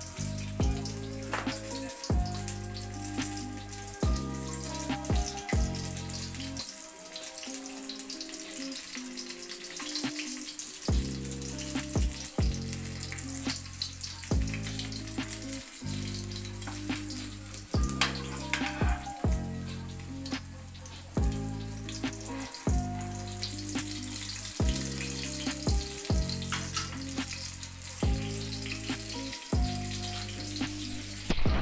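Breaded pork morcon rolls frying in oil in a wok: a steady sizzle with fine crackle, with background music playing under it.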